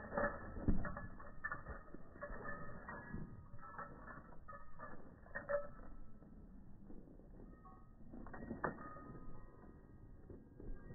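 Faint scattered mechanical clicks and creaks over low rustling, with no gunshots; the loudest click comes under a second in.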